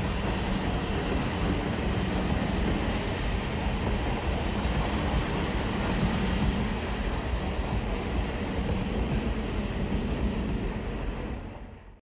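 A train rolling along the track: a steady rumble with a quick, regular clicking, fading out in the last second.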